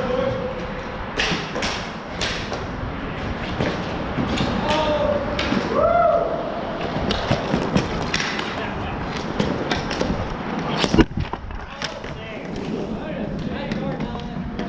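Hockey sticks clacking and knocking against each other and the plastic sport-court floor, with many sharp knocks and one louder crack about eleven seconds in. Players shout briefly a few times.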